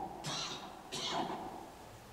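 A man coughing twice into his hand, two short harsh coughs about three quarters of a second apart.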